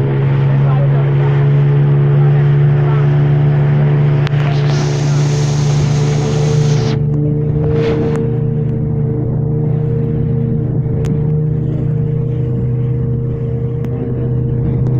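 A motorboat's engine runs loud and steady at one even pitch as the boat crosses choppy water. A rush of hiss, from spray or wind, rises over it for about two seconds near the middle.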